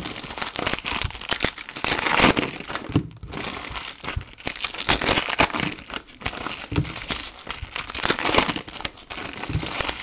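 Foil wrappers of Topps Chrome trading-card packs crinkling and tearing as they are ripped open by hand. The crackling is continuous and irregular, with a short lull about three seconds in.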